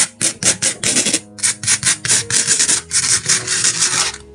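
Plastic spoon rubbing coloured sand across a sand-painting board in quick back-and-forth strokes, about four or five a second, a gritty scraping rasp.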